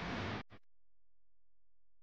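Noisy sound that cuts off abruptly about half a second in, followed by near silence with only a faint steady hum.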